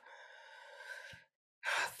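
A woman's soft breath into a close microphone, lasting a little over a second, taken in a pause in the middle of a sentence, with her speech starting again near the end.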